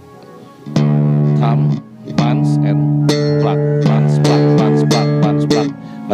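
Five-string electric bass guitar played with the slap technique. A short slapped note comes about a second in, then after a brief gap a longer note rings and is slapped again several times with sharp attacks, as a demonstration of basic slap.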